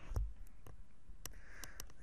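Quiet room tone with a soft low thump near the start and a few faint, scattered small clicks.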